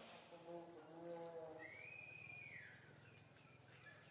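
A long-tailed macaque gives one quiet, high-pitched call, lasting about a second and rising then falling in pitch, around the middle.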